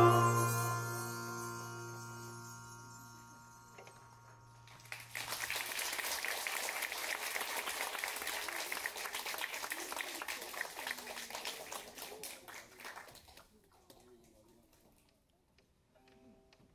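The ensemble's final struck chord on zithers and percussion rings out and dies away over about five seconds, with a low note holding longest. Audience applause then starts about five seconds in and fades out near the end.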